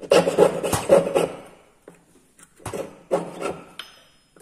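Jeweller's piercing saw cutting through a 16k gold ring held against a wooden bench pin: rapid rasping strokes of the fine blade. There are two runs of strokes, the first over about the first second and a half and the second near the end, with a pause of about a second between them.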